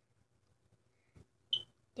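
Quiet moment with a faint tap, then one short high-pitched squeak from a plastic glue bottle being squeezed upside down to force glue out of its nozzle.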